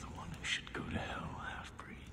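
A soft, breathy whispered voice whose pitch wavers up and down, with a sharp hiss about a quarter of the way in.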